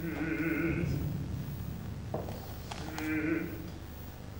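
Contemporary chamber-opera music: a nasal, wavering held note at the start, and again about three seconds in, with two sharp percussive knocks between them about half a second apart.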